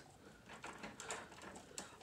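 Horizontal slatted window blinds being opened: a run of faint clicks and rattles from the slats.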